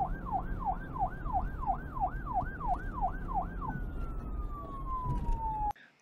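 A siren in fast wailing cycles, about three rising-and-falling sweeps a second, that changes about four seconds in to a single long falling tone and cuts off suddenly near the end, over a low rumble.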